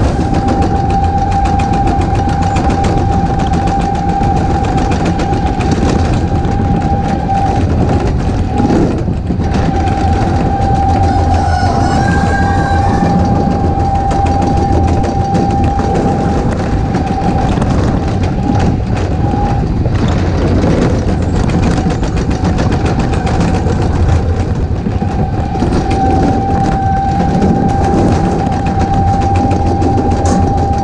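Onboard sound of a sled coaster car rolling fast down its track channel: a continuous loud rolling rumble with a steady high whine from the running wheels that drops out briefly a few times.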